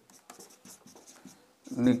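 Marker pen writing on a whiteboard: a run of short, faint strokes as a line of words is written.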